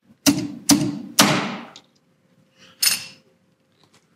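Slide hammer used for glue-pull dent repair on a car's rear wheel arch: three sharp knocks of the sliding weight against its stop, roughly half a second apart, the last ringing longest.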